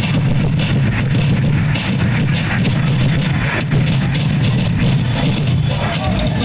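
Loud live street-festival music for a tribe's street dance, a dense, steady din of drums and percussion.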